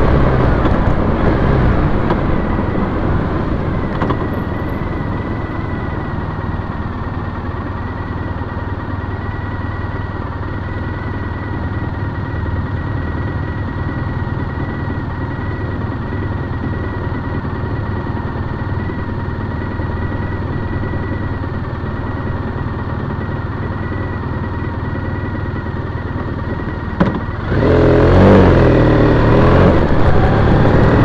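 Triumph Bonneville T100 air-cooled parallel-twin motorcycle engine, heard from the bike itself, slowing down over the first few seconds and then idling steadily while stopped. About 27 s in there is a click, and the engine pulls away with the level rising sharply as the bike accelerates.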